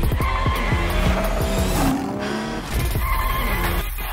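Trailer music built from car sounds: engine revs and tyre squeals set to a steady driving beat over a heavy bass.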